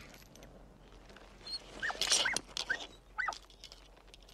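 Dog whimpering: about four short, high, rising-and-falling whines in quick succession, with a brief rustle among them.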